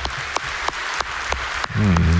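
Audience applauding: many hands clapping together.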